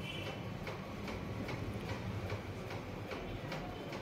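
Faint, regular ticking, two to three ticks a second, over a low steady hum.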